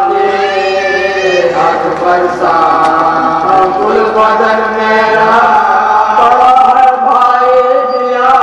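Marsiya, an Urdu elegy, sung by a small group of men together, the lead reciter with backing voices holding long, slowly gliding notes, with no instruments.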